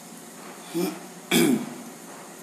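A man clearing his throat twice: a short sound just under a second in, then a louder, longer one about half a second later.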